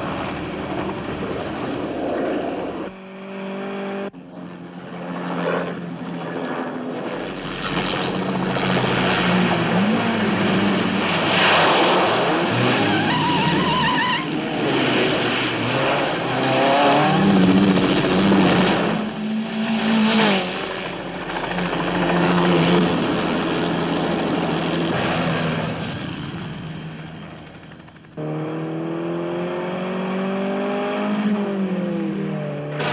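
Film soundtrack of a Lotus Esprit sports car's engine revving hard, its pitch climbing and falling with the gears, under heavy road noise. A helicopter is mixed in at times.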